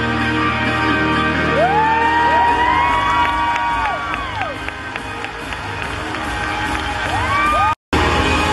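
Show music playing through an arena sound system, with the audience cheering and whooping from about a second and a half in, the whoops rising and falling in pitch. The sound drops out for a moment just before the end.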